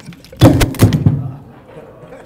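A lectern's gooseneck microphone being knocked and handled, picked up by that same microphone: several loud thumps and rattles in under a second, starting about half a second in, then dying away.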